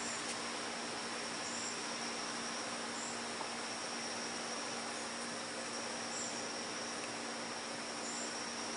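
Honey bees humming steadily around an open hive box while its frames are being worked. Over the hum run a steady high-pitched tone and short high chirps about every second and a half.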